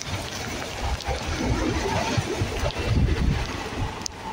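Passenger train coaches rushing past close by: a steady rush and rumble of wheels and air, with wind buffeting the microphone.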